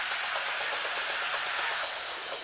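Techno DJ mix at a breakdown: a steady hiss of filtered white noise, with the bass and kick drum dropped out.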